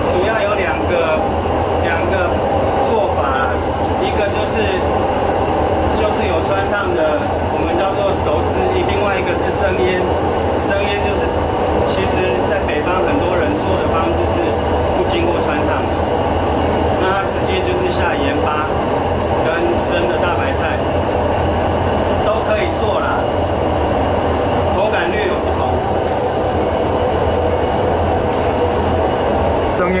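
Steady loud roar of a commercial gas range under a large wok of boiling water, with indistinct voices underneath.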